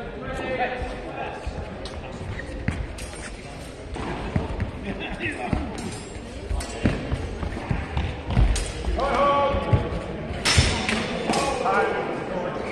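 A longsword bout: feet thudding on a sports-hall floor and sharp knocks of steel training swords striking. About ten and a half seconds in comes the loudest, sharpest strike, and voices call out around it near the end.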